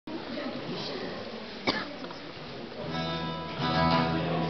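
Acoustic guitar strummed, a chord ringing out from about three seconds in and struck again, louder, near the end. Before it there is a low room murmur and one sharp knock a little before two seconds in.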